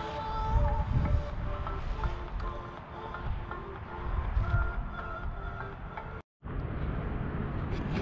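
Gotway MSX 100 V electric unicycle's hub motor whining as it is ridden slowly, its pitch holding and then stepping up and down with speed, over low wind rumble on the microphone. The sound cuts out briefly about six seconds in.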